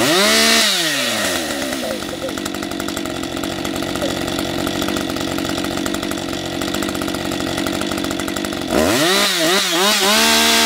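Husqvarna 550 XP two-stroke chainsaw running in free air, not cutting. It opens with a quick rev that falls back to idle within a second, then idles steadily. Near the end it is revved up again, wavering briefly before holding high.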